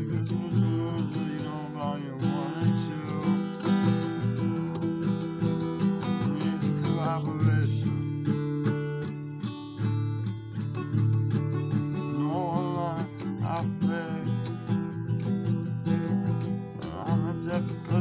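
Acoustic guitar being played, strummed chords mixed with picked notes in a steady rhythm.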